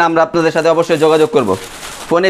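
A man speaking, his voice dropping in pitch about one and a half seconds in, followed by a brief quieter pause.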